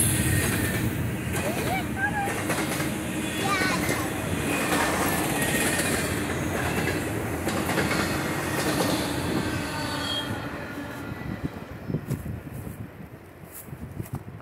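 Double-stack intermodal freight train's well cars rolling past at speed, steel wheels clattering over the rail joints. The noise fades away after about ten seconds as the end of the train passes.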